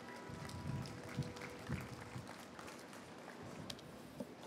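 Light, scattered applause from an outdoor audience, with a few soft low thumps in the first two seconds.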